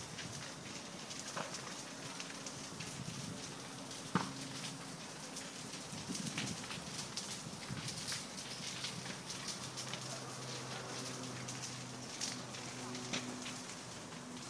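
Brush fire burning on a hillside, crackling with a steady patter of small pops and one sharper pop about four seconds in, over a faint low steady hum.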